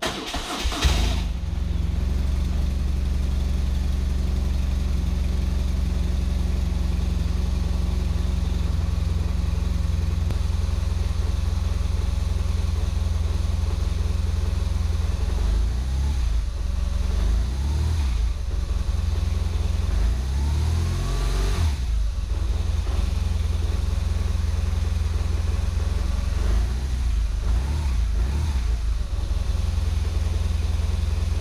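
BMW RT boxer-twin engine started from cold: the starter turns it briefly and it catches within about a second, then idles steadily. A few short revs rise and fall in pitch just past the middle before it settles back to idle.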